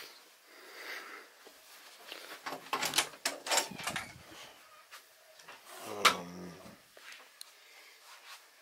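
A closet door being opened, a quick rattle of clicks and knocks about three seconds in, with another louder knock about six seconds in.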